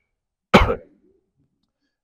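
A man coughs once, a single short, sharp cough about half a second in.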